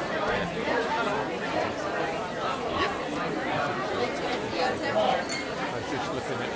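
Busy restaurant dining room: many voices chattering and overlapping, with nearby conversation at the table.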